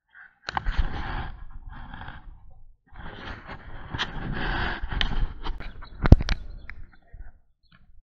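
Wind rushing over the microphone of a bicycle-mounted camera while riding, in two long gusts, with rattles and knocks from the cracked road surface; the loudest knock comes about six seconds in.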